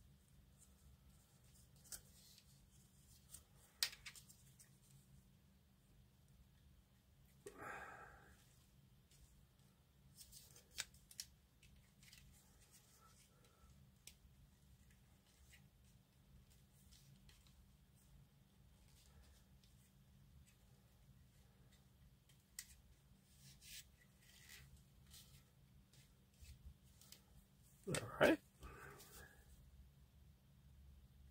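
Small plastic model-kit parts handled and fitted together, giving faint scattered clicks and light taps, with a brief louder sound near the end.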